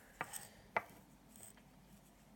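Three short, sharp clicks of metal tweezers in the first second, the last one the loudest.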